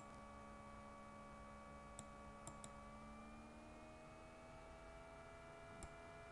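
Near silence: a faint steady electrical hum, with a few soft computer mouse clicks, one about two seconds in, a quick pair half a second later and one more near the end.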